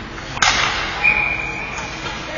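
A referee's whistle blows one steady shrill note for under a second, about a second in, stopping play. Just before it, there is a single sharp crack of a stick or puck impact.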